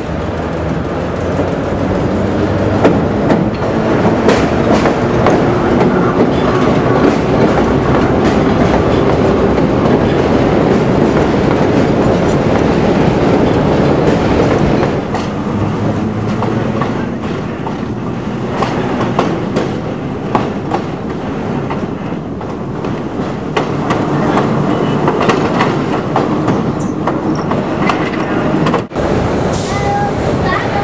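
Vintage subway trains running on elevated track, the steel wheels clicking over rail joints. The sound is loud and continuous, a little quieter from about halfway through, with a brief dropout near the end.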